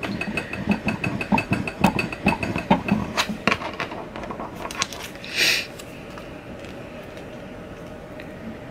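A plastic scraper tool burnishing transfer tape down over vinyl lettering, a quick run of rubbing strokes that stops after about three and a half seconds. About five seconds in comes a short rustle of the tape being handled.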